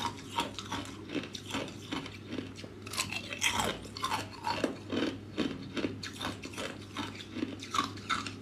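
Clear ice cubes being bitten and chewed: a run of sharp, irregular crunches, several a second.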